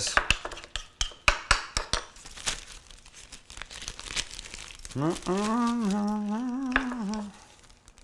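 A clear plastic bag crinkling in quick, irregular crackles as it is opened and handled to be filled with a spoon. About five seconds in, a person's voice holds one long, slightly wavering note for about two seconds.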